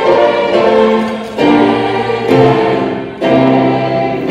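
A choir singing slow sustained chords with instrumental accompaniment. The chords change about once a second.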